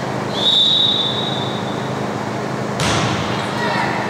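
Referee's whistle: one steady, high blast about a second and a half long, the signal for the server to serve. Near the end a sharp smack, the server's hand striking the volleyball, over crowd chatter.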